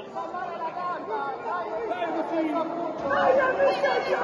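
Several people talking at once in a large hall: indistinct crowd chatter that grows louder about three seconds in.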